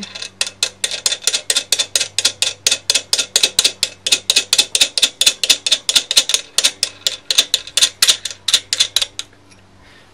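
Rapid, even metallic clicking, about five clicks a second, as a harmonic-balancer installer's nut and bearing are spun by hand along the installer's threaded rod; it stops about nine seconds in.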